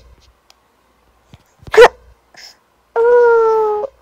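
A wordless voice: a short rising squeal about two seconds in, then a single held call about a second long, falling slightly in pitch near the end, sung on request.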